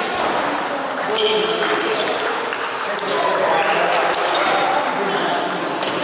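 Table tennis balls clicking off bats and table tops during rallies in a hall, over the murmur of voices.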